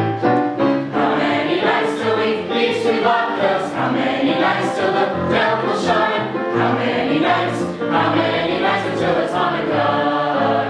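A choir singing a Hanukkah song with instrumental accompaniment, with a bass line moving in held notes underneath.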